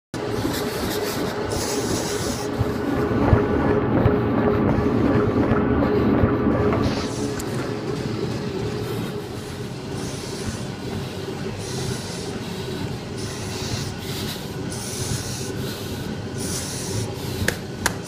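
A treadmill's belt and motor running with a steady hum, louder for the first seven seconds and then quieter. Heavy breathing through a training mask comes as a hiss every second or two, after three miles of running.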